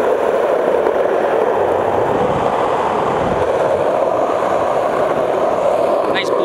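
Skateboard wheels rolling steadily over an asphalt path, a constant rumbling noise without breaks.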